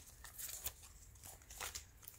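Embroidery floss bobbins on a metal ring being flipped through and loose threads handled: faint rustling with a few light clicks, about half a second in and again near the end.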